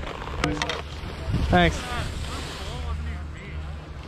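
Wind buffeting the microphone and skis running and scraping on groomed snow during a fast downhill run, with a brief voice call about one and a half seconds in.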